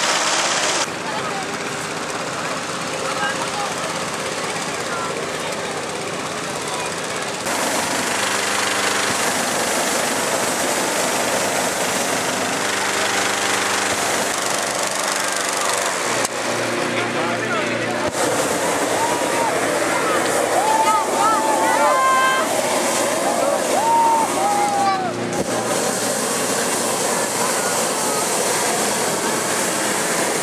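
A gas-engine inflator fan runs steadily, blowing air into a hot-air balloon envelope during cold inflation, with voices in the background.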